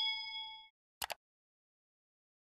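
Subscribe-animation sound effects: a bright bell ding rings out and fades over the first half-second or so, then a quick double mouse click about a second in.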